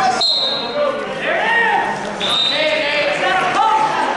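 Raised voices of coaches and spectators shouting in an echoing gymnasium during a wrestling bout, with two short, high-pitched squeaks, one just after the start and one about two seconds in.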